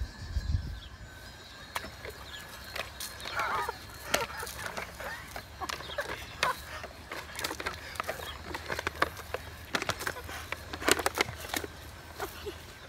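Water-pistol fight: a rapid, irregular run of short sharp squirts and clicks, denser near the end, with a brief cry about three and a half seconds in.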